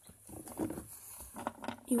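A quiet voice speaking low, with faint taps and handling of plastic toy figurines; a clearer word starts near the end.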